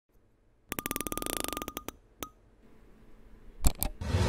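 Animated-intro sound effect: a fast run of clicks with a faint beep-like tone that stops just under two seconds in, one lone click after, then two sharp hits near the end.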